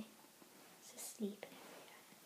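Quiet room tone with a brief whispered word about a second in.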